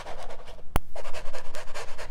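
Foam sponge brush scrubbing paint across a stretched canvas, a rapid, even scratchy rubbing, with one sharp click a little before halfway through.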